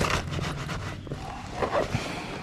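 Motor scooter engine idling steadily while parked. Two short, sharp sounds rise over it, one right at the start and one about three-quarters of the way through.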